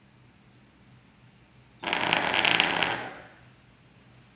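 Dog training collar receiver set off from its remote, buzzing loudly on a hard surface for just over a second. It starts abruptly about two seconds in and fades away, with a rough, rapid rattling texture typical of the collar's vibration motor.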